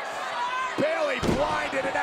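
A heavy thud on the wrestling ring mat a little over a second in, as a wrestler is taken down, over shouting voices.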